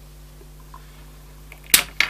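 A low steady hum, then one sharp click near the end and a few smaller clicks as the jumper-wire leads on the breadboard are handled.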